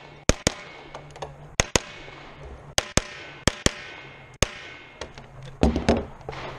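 Sig P226 Legion pistol fired close to the microphone, about ten sharp shots, mostly in quick pairs a fraction of a second apart, with short gaps between pairs. Near the end comes a cluster of louder, deeper knocks.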